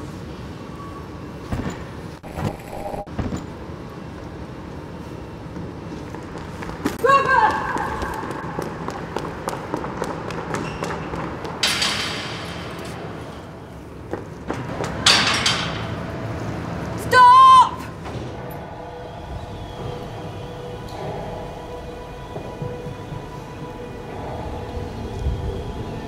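Sound-designed street scene: a murmur of voices under repeated thuds and knocks, with two whooshing rushes about twelve and fifteen seconds in. Two brief wavering pitched sounds stand out, near seven and seventeen seconds in.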